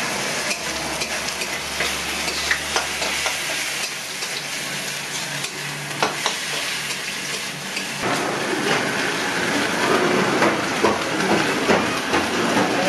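Hot oil with seeds sizzling in a metal kadai, while a metal spatula stirs and scrapes a vegetable mash in a second kadai, with scattered clicks of the spatula against the pan. The sound changes about eight seconds in.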